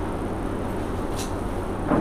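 Steady background noise in a pause between sentences: a low hum and rumble with a hiss above it, and one faint tick about a second in.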